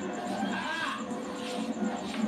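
A high voice-like call that rises and falls about half a second in, over faint background music.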